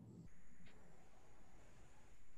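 Faint background hiss of a conference-call audio line between speakers, with a thin, steady, high tone.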